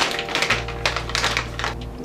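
Clear plastic sleeve crinkling in a run of quick, irregular crackles as a stack of stickers is pulled out of it, with background music playing.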